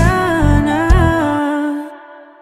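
The closing bars of a Tagalog pop love song: a long held vocal note that bends in pitch over the backing band. The bass drops out about one and a half seconds in, and the music fades away near the end.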